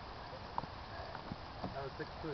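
Faint, indistinct voices over a steady low rumble, with a few light clicks around the middle.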